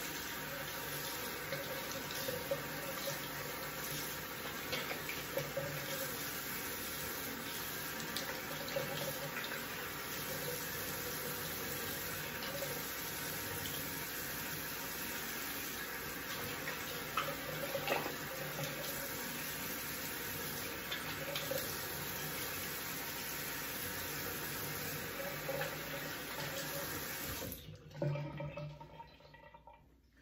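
Bathroom sink tap running steadily while hands splash water onto the face to rinse off shaving lather. The water cuts off suddenly near the end.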